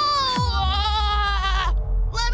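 A wavering, bleat-like cry with a shaky pitch, breaking off shortly before the end. A quick falling sweep comes about half a second in, followed by a low pulsing rumble.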